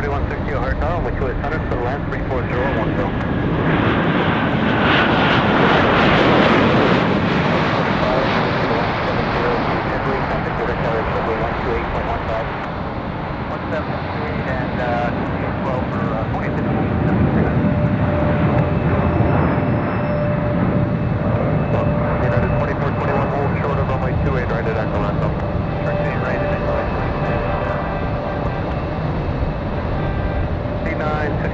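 Jet airliner passing close by. The engine noise swells to a peak about five seconds in, with a whine falling in pitch, eases off, then builds again around eighteen seconds.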